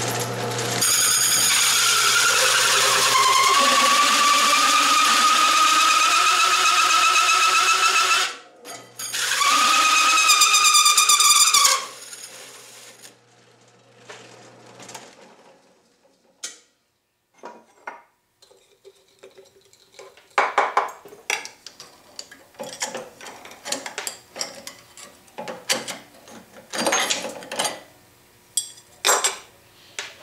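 Hole saw in a drill press cutting through 10-gauge steel plate: a loud, high-pitched screech for about seven seconds, a short break, then three more seconds before it stops. The drill press motor hum fades out, followed by scattered metallic clinks as the cut steel disc and slug are handled.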